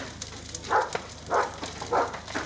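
House fire burning through a roof, with a steady crackle, a sharp crack at the start and louder bursts about a second in and again half a second later, as the corrugated slate roofing cracks in the heat.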